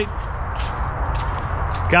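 A few faint crunches and rustles of footsteps and handling in dry fallen leaves and gravel, over a steady low rumble.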